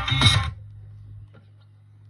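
A reggae song played from a vinyl LP stops about half a second in, leaving the silent gap between tracks: a steady low hum with a few faint ticks of record surface noise.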